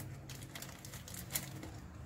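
A few faint light clicks and soft handling noises from a hand moving a sealed plastic bag of snail eggs on a tile floor, over a low steady hum.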